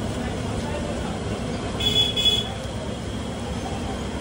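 Street traffic noise with a vehicle horn honking twice in quick succession about two seconds in.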